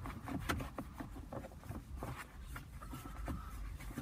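Microfiber towel rubbing and buffing the black plastic of a car's centre console around the cup holders: soft, irregular scuffs and a few small taps.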